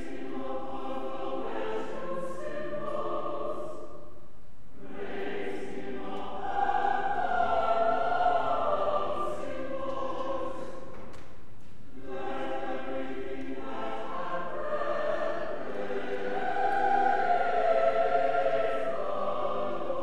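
Mixed church choir singing sustained chords in long phrases, with brief breaks between phrases about five and twelve seconds in, and each phrase swelling louder in its middle.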